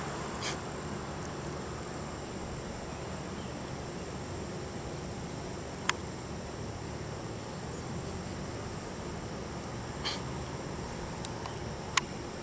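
Steady high-pitched trilling of an insect chorus, even and unbroken, over a low steady background rumble, with a single sharp click about six seconds in.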